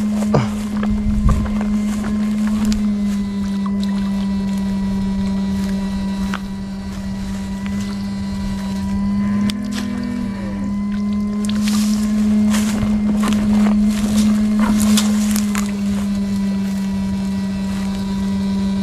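Electronic fish-shocker humming steadily, a single low buzz with overtones that rises slightly in pitch for a moment about halfway through. A few short rustling noises come in the second half.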